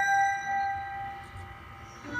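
A long held high note from a live trumpet and violin duet fades away over about the first second, leaving a brief hush in the music.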